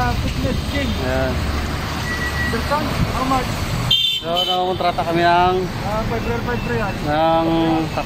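People talking at close range over the low, steady rumble of an idling car engine and street traffic. The sound drops out abruptly for a moment about four seconds in, then the talking resumes.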